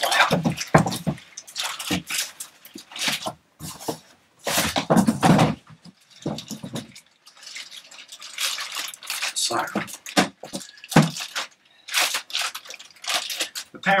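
Crinkling of a thick plastic bag and rustling, scraping cardboard as a heavy bagged power amplifier is handled out of its shipping carton, in irregular bursts with short pauses.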